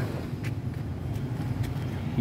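Steady low mechanical hum from a running motor, with a few faint clicks.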